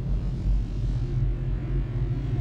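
Background music: a low, steady drone.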